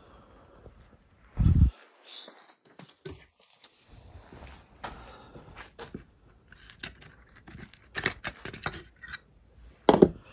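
Small clicks and scrapes as a laser-cut servo hatch cover, stuck tight in its routed servo well, is levered out with a scalpel blade in its slot. There is one dull, low thump about one and a half seconds in.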